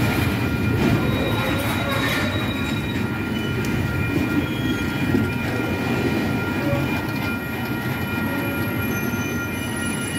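Loaded freight hopper cars rolling slowly over a street crossing: a steady low rumble of steel wheels on rail, with a thin, steady high squeal from the wheels and a few light knocks in the first couple of seconds.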